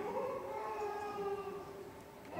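A voice sings one long held note that dips slightly in pitch and then holds steady before fading out near the end.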